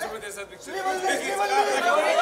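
Several people talking over one another in a room, with a brief lull about half a second in.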